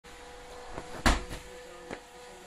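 A 25 lb slam ball is slammed onto a rubber gym floor with a heavy thud about a second in, followed by a lighter knock near the end.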